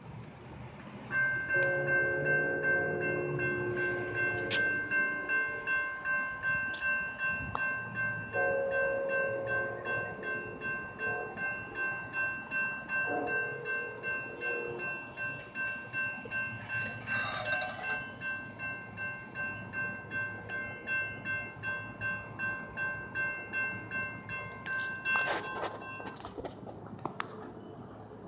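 Railroad grade crossing warning bells start dinging steadily about a second in as the gates come down. An approaching Amtrak P42 Genesis locomotive's horn sounds the grade crossing signal: long, long, short, long.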